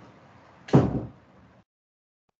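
A single short thump about three quarters of a second in, fading within half a second, heard over video-call audio. The call audio then cuts to dead silence.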